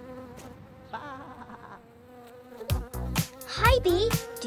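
Cartoon bee buzzing sound effect, a steady hum. About two-thirds of the way through, music with a beat comes in over it, with sliding pitched sounds near the end.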